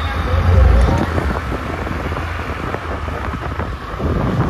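Wind rumbling on the microphone, heaviest about half a second in, with onlookers' voices in the background.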